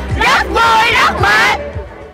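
A group of young women shouting and whooping together in a few loud, excited bursts that stop about a second and a half in.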